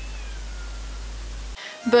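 Two cats fighting at a distance: a faint, drawn-out wail falling in pitch. It sits under a steady hiss and mains hum from the recording being turned up, and the hiss cuts off suddenly near the end.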